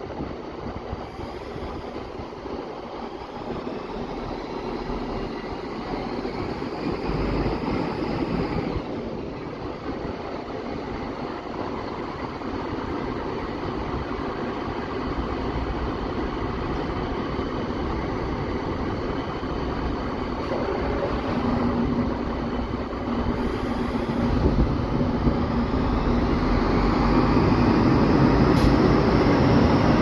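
A DB class 650 Regio-Shuttle diesel railcar pulling away and accelerating past at close range. Its engine note climbs, drops back about eight or nine seconds in, then climbs again, growing steadily louder as the train draws alongside.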